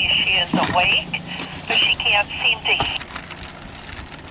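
Indistinct voices in the background, with a pulsing high-pitched buzz that stops about three seconds in.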